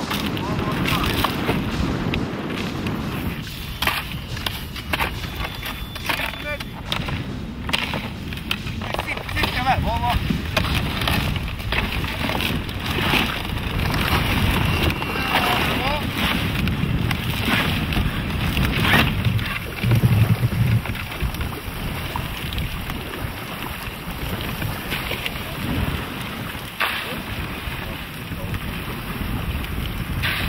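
Canoe being forced through slush ice on a freezing river: ice grinding, scraping and knocking against the hull and paddles, with wind on the microphone and brief voices.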